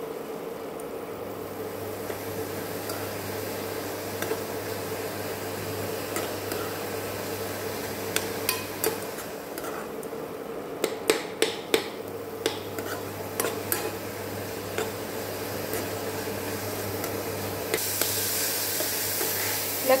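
A steel spoon stirs and scrapes grated radish frying in an aluminium kadai. Sharp clinks of the spoon against the pan come in a cluster around the middle, over a steady low hum. A hiss rises near the end.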